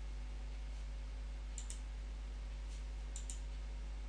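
Computer mouse clicking: two pairs of quick clicks, the second about a second and a half after the first, over a low steady hum.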